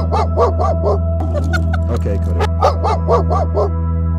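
A dog giving a rapid series of short, whiny yips that rise and fall in pitch, over steady background music.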